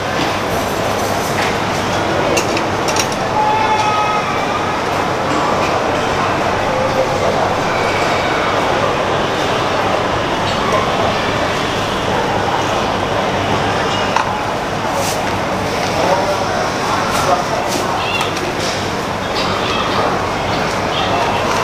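Busy shop ambience: indistinct background chatter over a steady rumbling hum, with a few short clicks and knocks.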